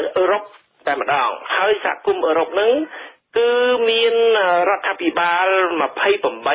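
Speech only: a voice reading Khmer radio news, with a thin, radio-like sound that lacks the higher tones.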